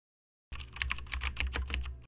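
Computer keyboard typing sound effect: a quick run of about a dozen keystroke clicks, starting about half a second in, as text is typed into a search bar.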